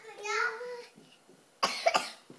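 A young girl's high voice for about the first second, then a short, loud burst of noise near the end.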